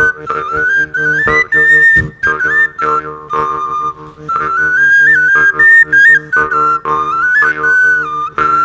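Highlander shepherd's wooden pipe (fujarka) playing a lively folk tune in quick stepping notes over a steady low drone, with short breaks between phrases.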